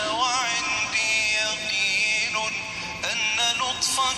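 A solo voice singing Arabic devotional verse in a long melismatic line, the notes wavering and gliding and held for a second or more at a time.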